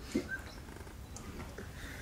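Quiet hall room tone through the microphone: a steady low hum with a couple of faint, brief chirps.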